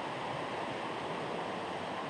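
A river rushing over rocks: a steady, even rush of water.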